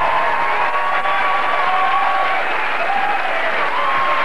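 Studio audience applauding and cheering steadily.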